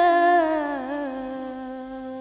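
A singer holds out the last note of a phrase in an Arabic-style gambus song, ornamenting it with wavering turns, then sliding down to a long, steady held note that slowly fades. Hardly any accompaniment is heard under the voice.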